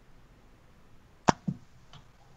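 Two sharp computer mouse clicks in quick succession, about a fifth of a second apart, over faint background hiss.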